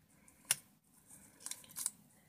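Small metal paper brads being turned by hand in their holes in a cardstock strip: a sharp click about half a second in, then a few fainter clicks and paper rustles near the end.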